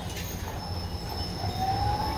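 City bus driving past with a low rumble and a steady high whine, joined about a second and a half in by a rising tone as it moves forward.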